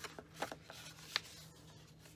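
Sheet of patterned designer paper being folded by hand along its score lines: faint rustling with a few crisp crackles as the creases give.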